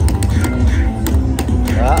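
Video slot machine's bonus-round music, steady electronic tones with sharp clicks as the free-spin reels stop and new gold coins lock in.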